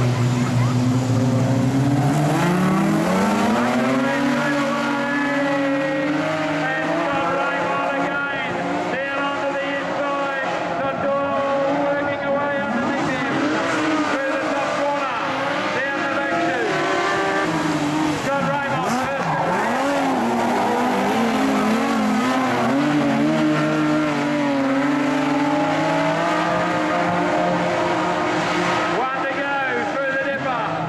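Two modified production speedway sedans racing side by side on a dirt oval. Their engines climb in pitch as they accelerate hard away from a standing start in the first few seconds, then keep rising and falling in pitch as they lap the track.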